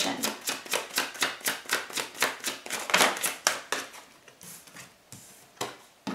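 A tarot deck being shuffled by hand, the cards giving quick papery clicks about five a second. These die down after about four seconds into a few fainter card sounds.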